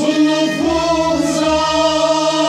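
Kashmiri Sufi devotional song (kalam): singing on long, slightly wavering held notes over a steady low drone.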